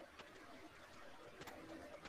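Near silence: faint room tone with two faint clicks, one just after the start and one about a second and a half in.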